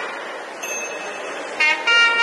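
A break in temple nadaswaram playing, with a haze of crowd and ambient noise, then the nadaswaram comes back in on a long held note about one and a half seconds in.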